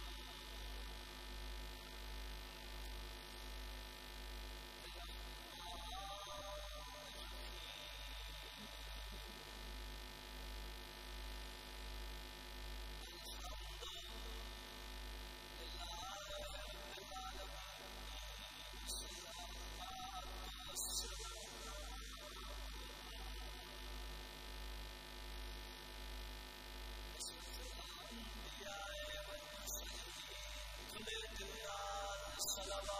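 Steady electrical mains hum from the sound system, its low throb pulsing roughly once a second, with a faint, indistinct voice showing through now and then.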